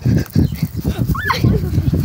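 A person running while holding a phone: irregular thumps of footfalls and handling, with wind rumbling on the microphone and hard breathing, and a short high-pitched cry about a second in.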